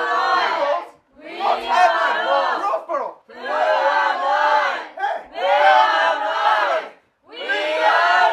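A group of voices chanting a short phrase together in unison, over and over: about five phrases of roughly two seconds each, with brief pauses between them.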